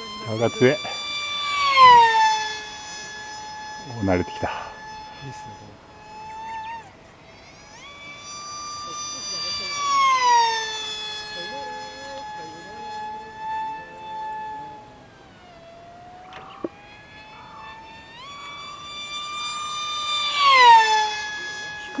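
FunJet RC flying wing's 2600KV brushless motor with a 6.5×5.5 pusher propeller, running at high power throughout. It makes three fast passes, near the start, about ten seconds in and near the end, each a loud rising whoosh whose whine drops sharply in pitch as the plane goes by.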